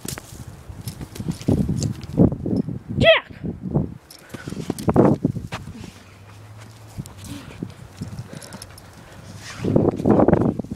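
Siberian husky vocalizing in play: a run of short growls and grunts, with one short high-pitched cry about three seconds in. It goes quieter for a few seconds, then breaks into a louder run of growling near the end.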